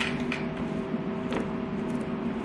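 Cloth rubbing over a Breville waffle maker's grid plates, the appliance scraping and crunching on burnt potato crumbs under it on the counter, with a few sharper clicks.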